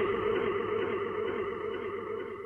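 The last held chord of a heavy metal song ringing out and slowly fading after the band stops playing, the sustained tones dying away evenly.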